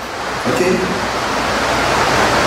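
Heavy rain, heard as a steady rush of noise that swells through the second half.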